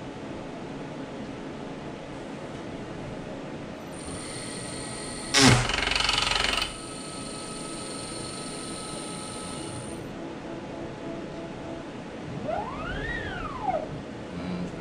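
CNC router running an automatic tool change: the water-cooled spindle spins with a high whine for about six seconds, with a loud clatter lasting about a second near its start as the collet nut is spun into the tool-changer pocket. Near the end an axis move gives a whine that rises and then falls in pitch.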